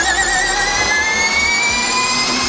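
Andretti Formula E electric race car pulling away: a high-pitched electric drivetrain whine of several tones at once. The pitch wavers briefly at first, then rises slowly and steadily.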